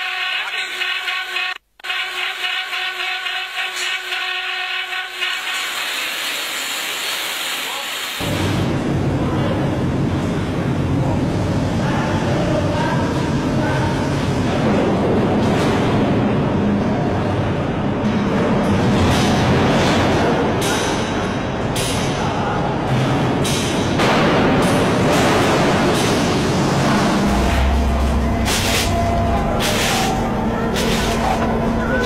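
Background music with steady tones for about the first eight seconds, broken by a brief dropout near two seconds in. Then a loud, steady noisy din with scattered clatters, like a working kitchen with machinery.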